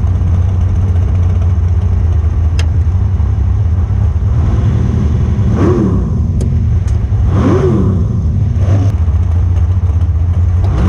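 Dragster engine idling with a steady low drone, revved up and back down twice in quick succession about halfway through, then once more lightly.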